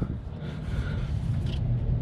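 A steady low hum with faint handling noises from a hand reaching among the engine bay parts.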